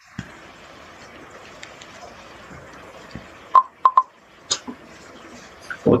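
Steady faint hiss of an open microphone, with a few short high blips a little past halfway and a single click soon after.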